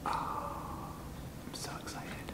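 A man's breathy, whispered exclamation, lasting about a second, with no clear words.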